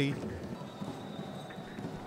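Low-level football stadium ambience: a steady, quiet haze of crowd and pitch noise, with a few faint knocks.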